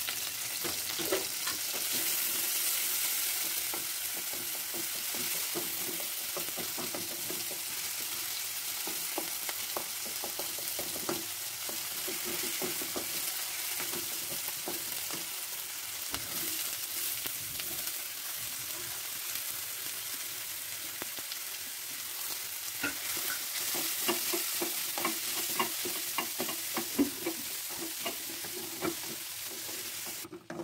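Oil sizzling steadily in an aluminium kadai as green chillies, ginger and curry leaves fry, and then sliced onions. A wooden spatula scrapes and taps against the pan, the strokes coming more often near the end.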